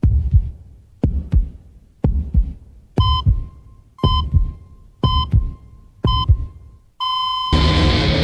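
Heartbeat sound effect, a deep double thump about once a second. From about three seconds in, a short heart-monitor beep sounds with each beat. Near the end the beeps give way to a steady flatline tone, and guitar music comes in over it.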